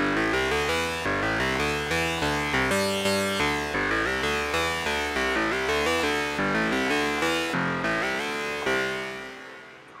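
Native Instruments Massive software synth playing the 'Dissonant Guitar' preset: a run of notes at changing pitches, each struck with a sharp attack and short decay, about two to three a second. The last note fades away near the end.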